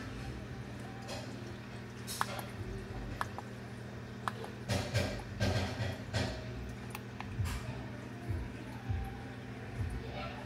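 Steady electrical hum of powered aquarium equipment, with scattered clicks and soft knocks as the buttons of a Maxspect Gyre controller are pressed; a cluster of louder knocks comes about five to six seconds in.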